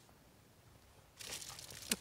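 Bubble wrap crinkling as a hand lays it over the top of a plastic portable camping toilet. The crinkling starts a little over a second in and is faint.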